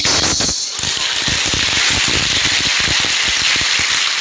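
Audience applauding: a dense, irregular clatter of many hands clapping that starts within the first second and goes on steadily.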